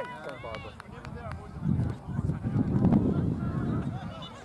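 Faint distant shouts from players, then about two seconds of low rumbling wind noise on the microphone, starting a little under two seconds in.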